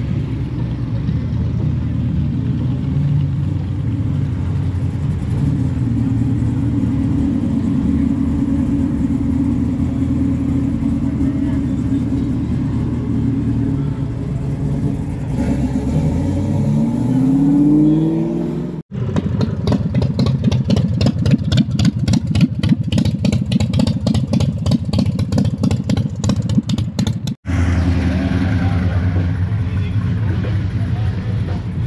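Vehicle engine idling, then revved with a rising pitch about 16 to 18 seconds in. It breaks off abruptly, gives way to a rapid, even pulsing engine beat, and after a second abrupt break settles back to a steady idle.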